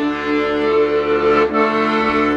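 Piano accordion playing held chords of a local Kyrgyz tune, the chord changing about one and a half seconds in.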